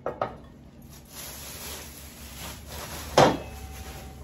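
Plastic shopping bags and bubble wrap rustling as wrapped decorations are unpacked, with a couple of light knocks at the start and one sharp knock of a hard object about three seconds in.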